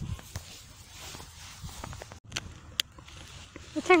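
A plastic dog-treat pouch being opened by hand: rustling with a few sharp crackles.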